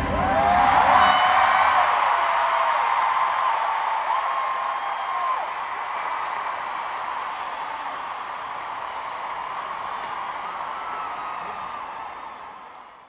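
Large stadium crowd cheering, applauding and screaming, with long high-pitched shrieks standing out in the first five seconds. The cheering slowly dies down.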